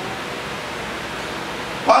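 A steady, even hiss of background noise with no distinct event in it; a man's voice cuts back in right at the end.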